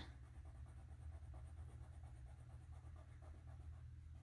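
Felt-tip marker colouring in squares on paper: faint, quick repeated scratchy strokes.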